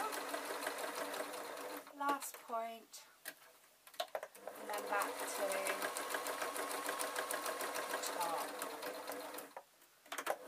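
Electric domestic sewing machine stitching through layered fabric in two spells with a pause of about two seconds between them: the motor whines under rapid, even needle strokes. It stops just before the end.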